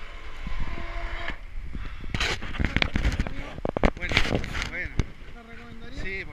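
Indistinct talk close to the microphone, over low rumbling and a few sharp knocks and clicks a little past the middle.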